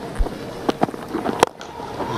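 Cricket bat striking the ball for a big lofted hit: a sharp crack among a few other short knocks, over the steady background noise of the ground.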